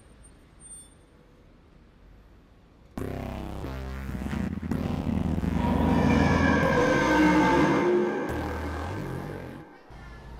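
A deep growl sound effect starts suddenly about three seconds in, swells for several seconds and fades away near the end.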